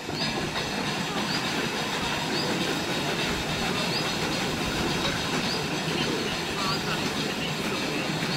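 Steam narrowboat's engine working and its propeller churning the water as the boat moves out of a canal lock, a steady noise starting at once, with a short high chirp about once a second.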